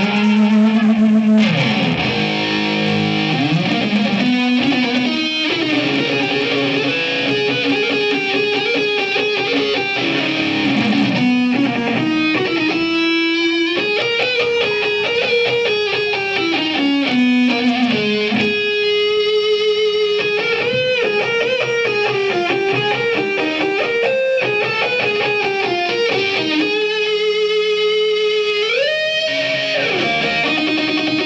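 Electric guitar playing a solo: a single melodic line of held notes with bends and slides, ending with a rising slide near the end.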